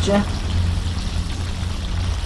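Battered catfish pieces frying in a skillet of hot oil: a steady sizzle and bubbling, with a low steady rumble underneath.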